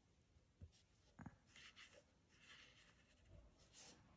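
Near silence with faint soft brushing of a watercolour brush, working paint in the palette pan and stroking it onto wet paper. Two faint low knocks come in the first second and a half.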